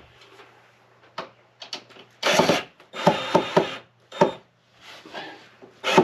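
Cordless drill-driver backing out cabinet door hinge screws in short bursts, about two seconds in, again at three seconds and just before the end, with light clicks and knocks of the door between.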